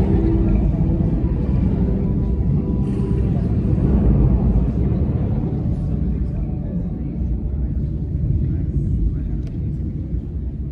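A steady low rumble filling a large hall, with a faint murmur of voices.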